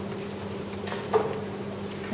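Room tone in a pause between a lecturer's sentences: a steady low hum, with one brief short sound a little over a second in.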